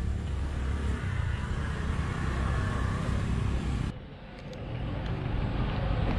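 Outdoor ambient noise with a steady low rumble. It cuts off abruptly about four seconds in and gives way to a different, quieter outdoor ambience.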